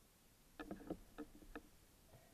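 A quick run of faint clicks and knocks, each with a short ring, picked up underwater, starting about half a second in and lasting about a second.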